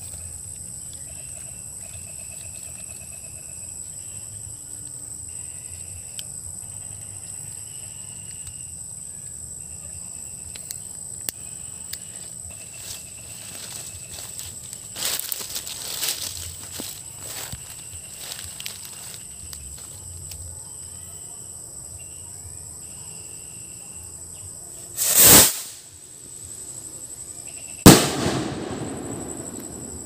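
Homemade PVC kwitis (stick skyrocket) firing: a loud, short rush of noise as it lifts off near the end, then about three seconds later a sharp, louder bang that dies away as it bursts overhead. Insects trill steadily in the background.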